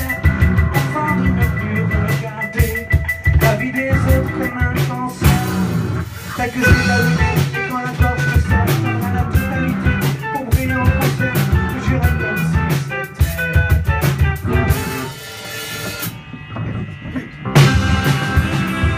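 Live rock band playing loud through a club PA, with drum kit, electric guitar and bass. The band drops back to a sparser passage about two seconds before the end, then the full band comes back in.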